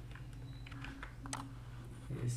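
A few clicks at a computer, the sharpest just past halfway, over a steady low hum.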